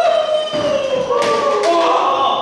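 A group of young men cheering with long, drawn-out calls that slide in pitch. A couple of hand claps come about a second and a half in.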